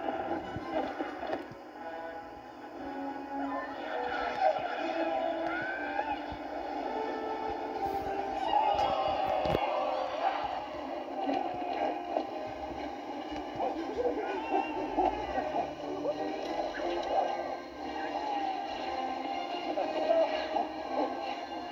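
Animated film soundtrack of music mixed with character voices, played through a small screen speaker and recorded off it, so it sounds thin and tinny with no deep bass.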